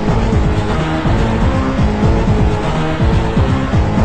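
Early-1990s techno-house dance music, with a bass line of repeated falling-pitch sweeps, about two to three a second.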